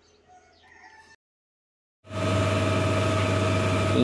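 Faint bird calls at first, then a short dead break. From about halfway in, a tractor's diesel engine idles steadily and loudly, with a deep hum and a steady whine over it.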